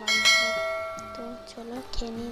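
A bell notification sound effect, struck once and ringing out as it fades over about a second and a half, from an animated subscribe-button overlay.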